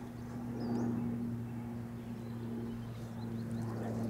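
Quiet outdoor background with a steady low hum, and a faint short chirp about a second in.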